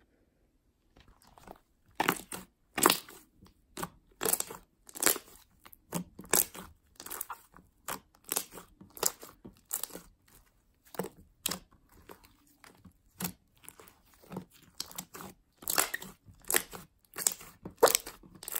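Hands squishing and poking a large fluffy slime, making a string of sharp pops and crackles, about one to two a second, that start about a second in.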